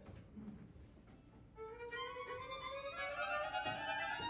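Bowed violins of a string quartet playing a short excerpt. After about a second and a half of near quiet, a sustained note enters and slides slowly upward in pitch.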